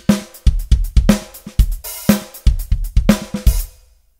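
Sampled drum kit in the MINDst Drums software instrument playing back a funky preset groove at 120 BPM, a rhythmic run of kick and other drum and cymbal hits. The pattern stops just before the end.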